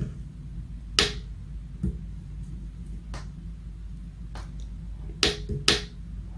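A small tactile push button on a breadboard clicking as it is pressed several times, with a close pair of clicks near the end, over a steady low hum.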